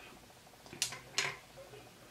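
Soft mouth and breath sounds from a person: two short hisses just under half a second apart, about a second in, against quiet room tone.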